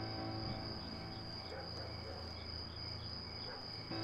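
Crickets chirring steadily in a continuous high trill with faint, evenly spaced chirps, over a low steady hum.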